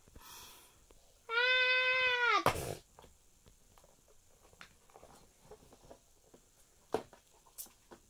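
A child's voice holding one long, high, animal-like cry for about a second and a half, level in pitch and then dropping off at the end. Faint taps follow, with two sharper clicks near the end.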